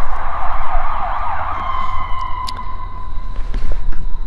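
Emergency-vehicle siren wailing, its pitch sweeping up and down and then settling into one steady tone about a second and a half in.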